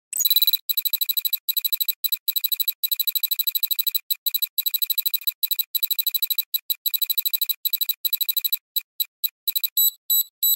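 Rapid high-pitched electronic beeping like an alarm clock, about ten beeps a second in runs broken by short gaps, becoming more broken near the end.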